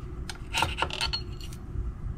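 A metal scraper clicking and scraping against a 3D printer's textured bed as freshly printed plastic parts and their brim are pried loose, with a quick cluster of sharp clinks about half a second to a second in.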